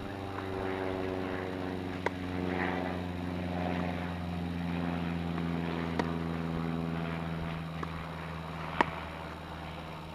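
An engine hum with a stack of tones whose pitch slowly falls, running under three sharp tennis-ball strikes off racquets about two, six and nine seconds in, the last one the loudest.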